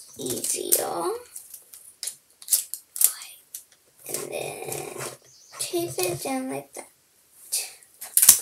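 A young girl's voice talking in short stretches, the words unclear, with a few sharp clicks and taps in the gaps between.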